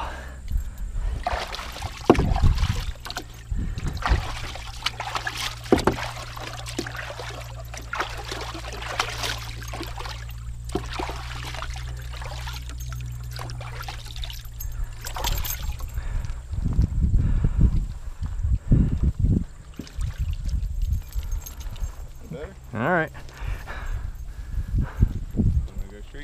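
Water sloshing and splashing in a shallow plastic tub as a dog stands in it and a hand scoops and rubs water over its coat.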